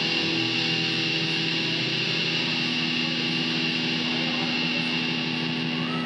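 A live band's electric guitars hold one chord, making a steady, unchanging wash of sound with a high ringing tone over it.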